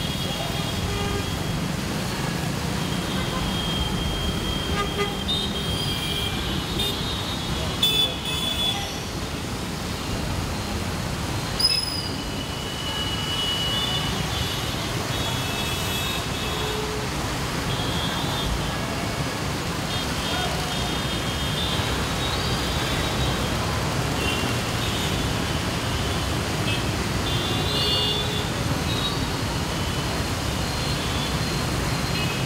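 Dense, slow-moving city traffic on a wet road, a steady mix of engines and tyre noise from cars, auto rickshaws and scooters. Frequent short horn toots are scattered throughout, and brief sharp knocks come about eight and twelve seconds in.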